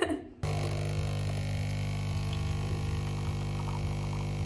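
Single-serve coffee machine brewing, its pump running with a steady hum as coffee runs from its twin spouts into a mug. The hum starts abruptly about half a second in.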